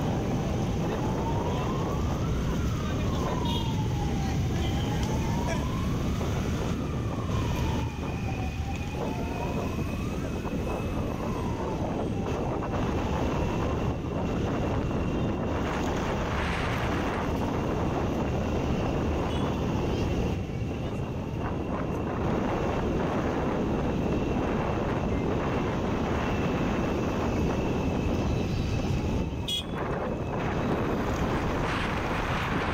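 A siren wailing slowly up and down, one rise and fall about every four seconds, fading out about twelve seconds in, over a steady din of crowd voices and street noise. A faint steady high tone sounds through the middle.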